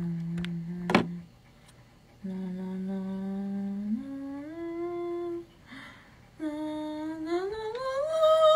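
A woman humming long, held notes in three phrases split by short pauses, the pitch stepping higher with each phrase and gliding up near the end. There is a sharp click about a second in.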